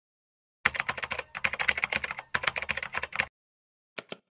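Computer keyboard typing sound effect: a fast run of key clicks in three bursts with short pauses, starting a little over half a second in and stopping a little after three seconds.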